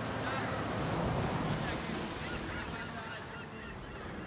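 Wind and sea noise buffeting an outdoor microphone over the low steady hum of the heavy crane's machinery lifting a load, with scattered faint high-pitched calls in the background.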